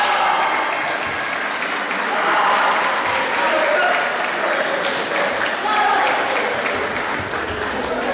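Spectators and coaches clapping and calling out, applauding a judo win.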